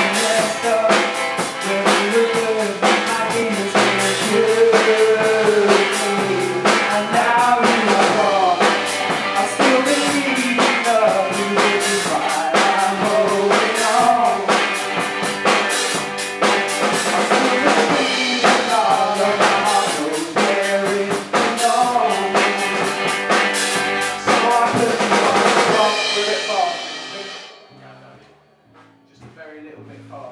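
Live rock band playing a song: acoustic guitar, electric bass and drum kit with a male lead singer. The song ends about 26 seconds in, its last chord dying away over a couple of seconds.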